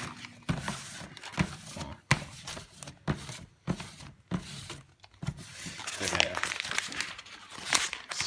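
A sheet of paper rubbed hard against a bass drum head to wipe off wet spray paint, in irregular crinkling, scrubbing strokes. The paper ends up crumpled in the hand.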